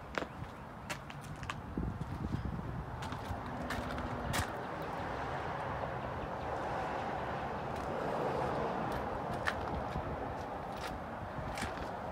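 Footsteps on pavement and scattered small clicks over a steady outdoor background noise that swells a little in the middle.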